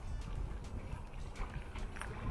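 Sea waves lapping at the shore, heard through uneven rumbling wind noise on the microphone.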